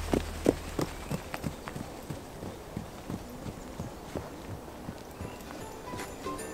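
Horses and people walking on a sandy, leaf-covered forest path: soft, irregular taps of hooves and footsteps, about three or four a second.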